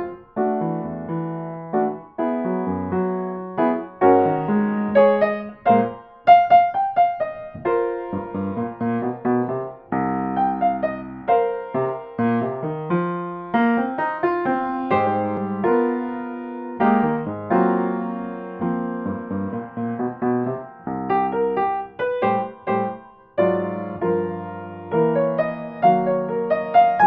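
Solo piano playing a jazzy children's piece, a steady stream of quick notes and accented chords.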